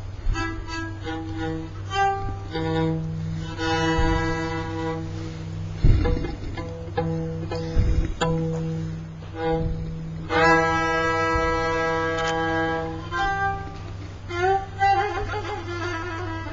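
Kamancha, the Azerbaijani spike fiddle, bowed in short strokes and long held notes on a few steady pitches, as when tuning up. There are two dull knocks about six and eight seconds in. Near the end the playing turns to sliding, wavering notes.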